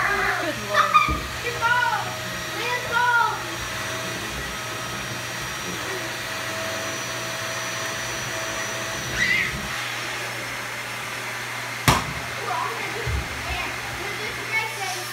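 Dyson upright vacuum cleaner running with a steady hum. A child's voice calls out several times over it in the first few seconds, and a sharp click comes about twelve seconds in.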